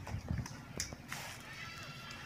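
Playing cards being handled and put down on a cloth mat: a few faint taps and clicks.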